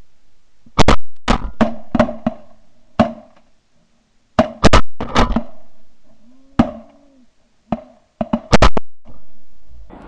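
A volley of shotgun blasts from several hunters firing on a flock of snow geese: about fifteen shots in quick clusters, some only a fraction of a second apart, over about eight seconds.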